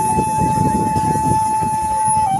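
A single steady high tone held unbroken on one note, like a whistle, over dense, irregular low-pitched background noise.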